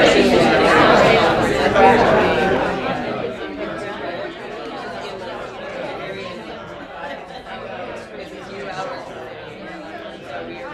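Audience members talking in pairs all at once, many overlapping conversations in a large hall. The voices are loud for the first few seconds, then settle into a quieter, steady babble.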